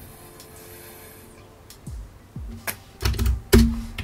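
Computer keyboard keys tapped a few times, separate clicks in the second half, over faint background music.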